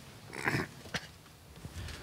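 Handling noise on a conference-table microphone: a short rustle about half a second in, then a sharp click about a second in as its button is pressed to switch it on.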